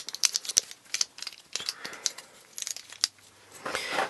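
Irregular light plastic clicks and taps from a small plastic mini tripod being handled as its legs are folded together. Most of the clicks fall in the first three seconds.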